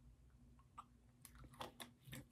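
Near silence with a few faint, short clicks in the second half: a person swallowing gulps of a drink from a bottle.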